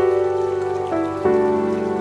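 Soft background music of sustained chords, with a new chord coming in about a second in and another shortly after, over a faint rain-like patter.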